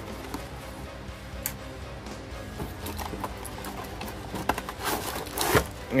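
Clear plastic blister tray sliding out of a cardboard toy box, with scattered clicks and rustling and a louder scrape near the end, over soft background music.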